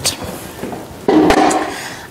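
A sudden knock and a short scraping rustle about a second in, fading away, as something is set down and pushed aside on a work table.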